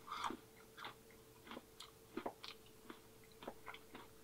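A person chewing a mouthful of ice cream with cookie crumbles: faint wet mouth clicks and smacks, coming irregularly. A faint steady hum runs underneath.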